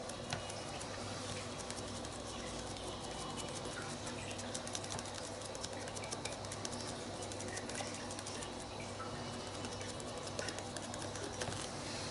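Faint, quick, irregular light taps and rubbing of a small sponge dabbing acrylic paint onto a paper journal page, over a steady low hum.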